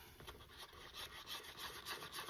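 A wooden craft stick stirring epoxy resin in a paper cup, faintly scraping against the cup's sides and bottom in quick repeated strokes as alcohol ink is mixed in.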